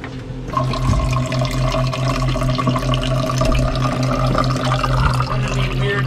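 Water running from a galley faucet into a metal cup, starting about half a second in and filling steadily. A low hum pulsing several times a second runs underneath.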